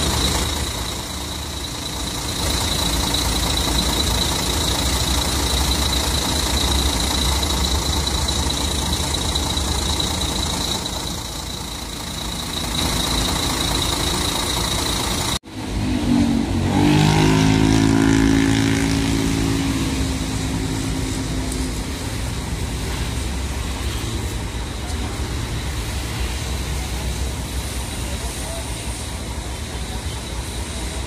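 Large diesel bus engine idling close by, a steady low hum with roadside traffic around it and a thin high whine over it in the first half. The sound breaks off abruptly about halfway, and the idle carries on after it.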